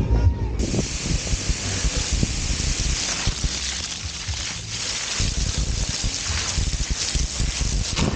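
Water jet from a garden hose spraying against a bicycle and splashing over the camera, a steady hissing spray that starts suddenly about half a second in.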